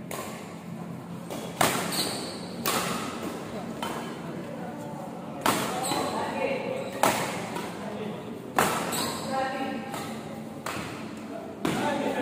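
Badminton rackets striking a shuttlecock back and forth in a rally: sharp smacks one to two seconds apart, each ringing on in a large hall.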